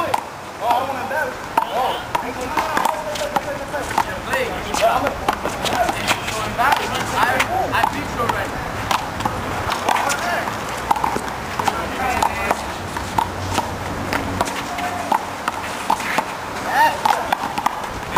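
Voices of players and onlookers talking and calling out, with irregular sharp smacks of a small rubber handball struck by hand and rebounding off the wall during one-wall handball play.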